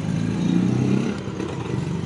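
A low engine hum from a motor vehicle running nearby, swelling about half a second in and easing off after a second.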